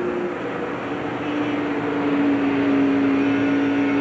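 Stock car engine at race speed heard through its roof-mounted onboard camera: a loud, steady high engine note that settles and holds level from about a second in.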